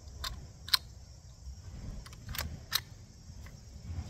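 Sharp metallic clicks of a Rossi RS22 .22LR semi-automatic rifle's action being worked by hand to clear a failure to feed: four clicks in two quick pairs, the first pair under a second in and the second about two and a half seconds in.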